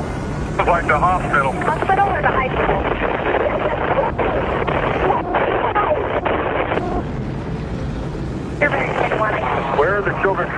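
Garbled two-way radio voice traffic, muffled and narrow-sounding, over a steady rushing static. The voices come and go, dropping to static alone for a moment before returning near the end.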